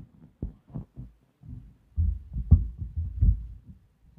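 Microphone handling noise: irregular low thumps and knocks as the microphones are gripped and adjusted on their stand. The knocks are heavier in the second half.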